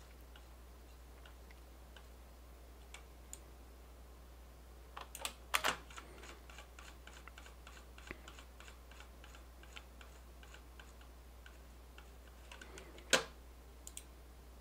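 Quiet, scattered clicks of a computer keyboard and mouse, with a quick run of faint, even ticks in the middle and one louder click near the end.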